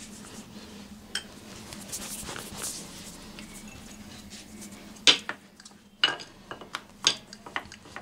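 Soft brushing of oil over a stone worktop, then several sharp knocks and clinks of kitchen utensils against the counter in the second half, a second or so apart.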